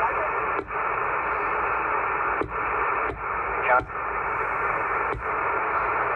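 Uniden Grant XL CB radio's speaker hissing with receiver static, broken by about five short clicks as the channel selector is stepped from channel to channel. A brief garbled voice comes through about halfway.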